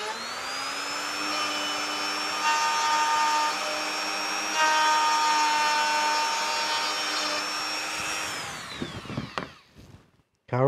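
Small router with a fine bit spinning up to a steady high whine and cutting around the edge of a coin recess in a wooden guitar headstock, taking out a little more wood so the penny fits less tightly. It bites louder twice, then winds down near the end.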